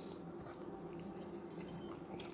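Quiet room tone with a steady low hum, and a few faint light clicks near the end.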